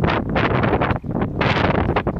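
Wind buffeting the microphone in loud, uneven gusts, with a brief lull about halfway.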